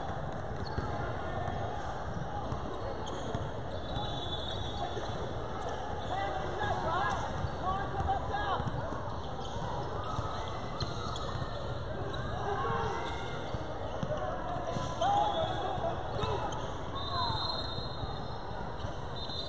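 Basketball game sound in a gym: a ball dribbling on a hardwood floor amid scattered shouts from players and spectators, echoing in the large hall.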